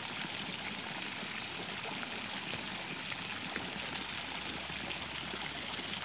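Steady rush of running and splashing water from spray jets falling into a hot-spring pool.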